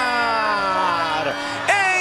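A man's long drawn-out shouted call, held and sliding slowly down in pitch, with a second held call starting near the end: a football commentator's prolonged goal cry.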